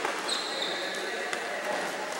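Floor hockey sticks and ball clicking and tapping on a wooden gym floor, echoing in a large hall, with a thin high tone lasting about a second near the start.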